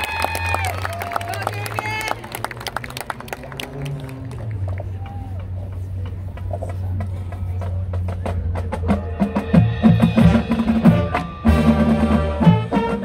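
Opening of a marching band's field show: gliding electronic tones and a low steady synth drone played over the sideline speakers, with sharp clicking percussion. About nine to ten seconds in, drums and horns enter on a loud rhythmic beat.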